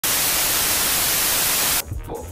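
Loud TV static hiss, an even white-noise rush that cuts off suddenly near the end. A low beat of music comes in just after.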